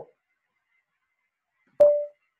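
A sudden sharp click near the end, with a short, loud single ringing tone that dies away within about a third of a second.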